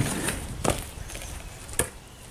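Stunt scooter rolling off a board onto gravel, with a rough rolling noise that fades and two sharp knocks about a second apart.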